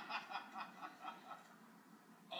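Laughter from a television studio audience and panel, heard as a quick run of chuckles, about five a second, that trails off after a second or so. It is played through a TV set's speaker and picked up by the recording device.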